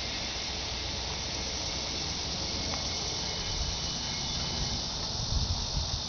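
Steady high-pitched hiss of an insect chorus, with a low rumble underneath.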